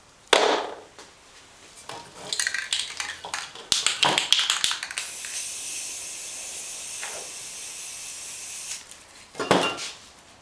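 Aerosol spray paint can rattled, its mixing ball clicking rapidly for about three seconds, then sprayed in one steady hiss of about four seconds. A short burst of noise comes just after the start and another near the end.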